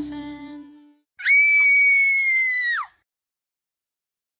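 Music fading out, then a girl's high-pitched scream just over a second in, held at one pitch for about a second and a half and dropping away at the end: the sound sting of an animated 'screaming girl' logo.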